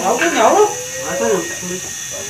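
A two-string bowed fiddle with a coconut-shell body playing a wavering melody, with a voice singing a chant along with it ("bay bay bay" near the end).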